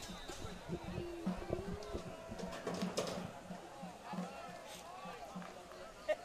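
Faint crowd noise from a high school football stadium: distant voices and chatter from the stands and sidelines, with a faint steady low beat underneath.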